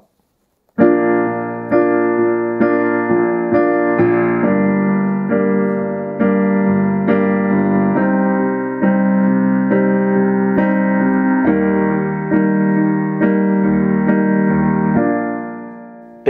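Digital piano playing a I–vi–ii–IV chord progression in B-flat major (B-flat major, G minor, C minor, E-flat major) with a simple rhythm, each chord struck repeatedly for about four beats. It starts about a second in, and the last chord rings out and fades near the end.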